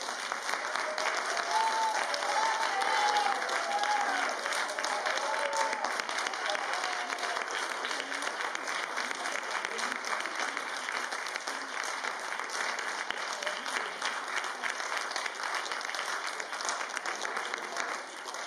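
Audience applause: many hands clapping steadily. During the first several seconds, voices call out over it.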